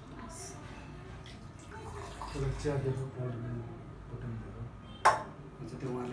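A single sharp glass clink about five seconds in, as a glass tea jar or its glass lid is handled, with some quiet speech a couple of seconds before it.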